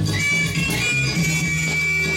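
Dance music for a breaking battle, played over speakers: a pulsing bass beat under a guitar line, with a high note that slides up just after the start and is held.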